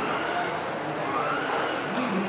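Several electric RC racing cars running laps on a carpet track, their motors whining in high pitch glides that rise and fall as they pass, over a steady hiss.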